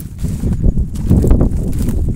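Loud low rumbling and knocking on the phone's microphone as it is carried and moved about: handling noise mixed with wind on the microphone.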